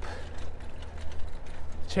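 Steady low rumble of a hybrid bicycle rolling on pavement, with wind on the rider's lavalier microphone, and the rider's heavy breathing.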